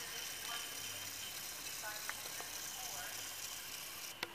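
A few faint, short bird calls scattered over a steady background hiss.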